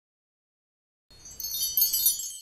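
Silence, then about a second in a bright, high tinkling chime sound effect, like wind chimes, swells and fades away over about a second and a half.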